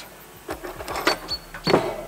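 Light clicks and knocks of tools and small steel parts being handled and set down on a wooden workbench, irregular, with a stronger knock near the end.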